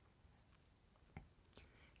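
Near silence: room tone, with one faint click just over a second in.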